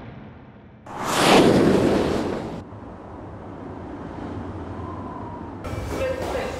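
Cinematic title sound effect: a loud rushing whoosh-boom swells about a second in and cuts off suddenly after about a second and a half, leaving a low hiss and rumble.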